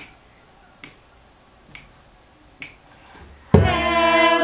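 Four finger snaps, evenly spaced a little under a second apart, counting in a song; singing starts loudly about three and a half seconds in.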